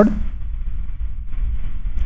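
A steady low background hum, with a faint hiss joining it after about a second. No other sound.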